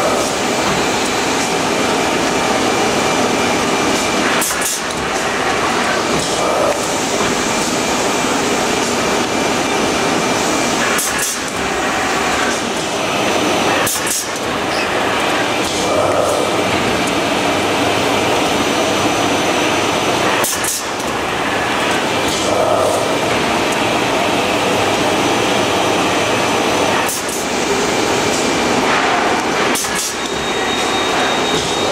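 Square-bottom paper shopping bag making machine running: a steady, loud mechanical clatter of its conveyors, rollers and folding stations, with a few sharp clicks scattered through it.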